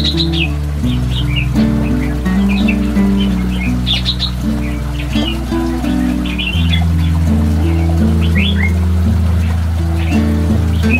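Calm instrumental background music with long held low notes, with small birds chirping repeatedly over it.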